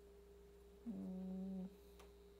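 A short hum held on one low, steady pitch for under a second, starting about a second in and cutting off suddenly.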